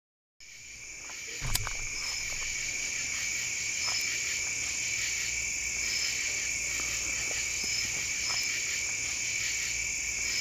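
Night chorus of insects trilling steadily, with short higher chirps every second or two. It fades in from silence at the start, and there is a single click about a second and a half in.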